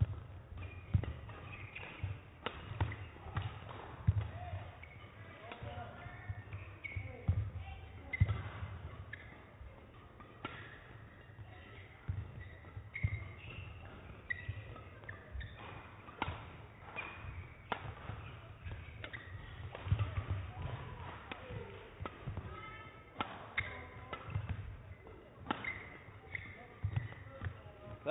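A long badminton rally: racket strikes on the shuttlecock come every second or so, along with short squeaks of court shoes and thuds of footfalls. It all echoes in a large sports hall.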